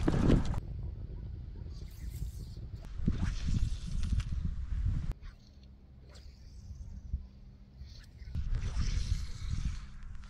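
Wind gusting on the microphone at the lakeside, an uneven rumble in bursts that drops away suddenly about halfway through and swells again near the end.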